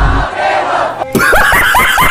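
A loud crowd-like din of shouting for about the first second. Then a man bursts into loud, rapid laughter, short pitched 'ha' syllables about six a second.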